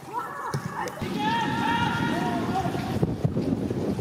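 Footballers shouting to each other on the pitch, with a few drawn-out calls, over wind noise on the microphone.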